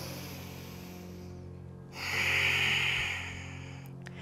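A woman's audible breath, one breathy rush lasting about a second midway through, taken in time with a repeated forward-fold lift, over soft background music.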